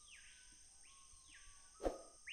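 Faint forest ambience: a steady high insect hum and a call, repeated about once a second, that rises and then falls in pitch. A short pop comes near the end.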